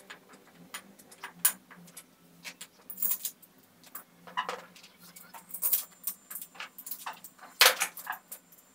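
Scattered clicks and clinks of metal parts being handled: a cast chainsaw-converter bracket picked up and fitted against an angle grinder's gear head. The loudest knock comes near the end.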